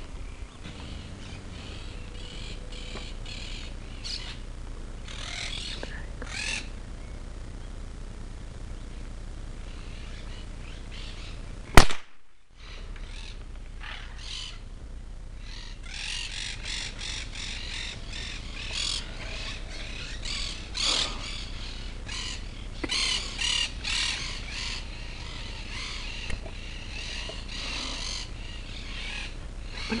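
A single sharp shot from a .22 LR rifle about twelve seconds in, by far the loudest sound. Birds chirp and call throughout, most busily in the second half.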